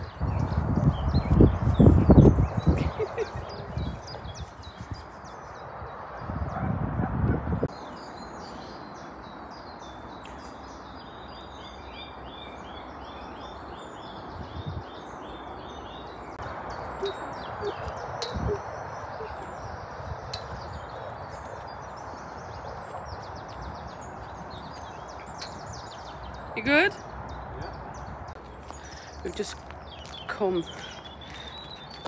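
Small birds chirping and trilling over a steady outdoor background. Loud low rumbling noise comes in the first few seconds and again around six to seven seconds in.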